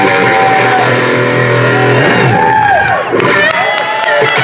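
Live electric guitar solo on a single-cutaway Les Paul-style guitar: held notes bent up and down with vibrato over a low sustained note that stops about halfway, then higher, thinner notes near the end.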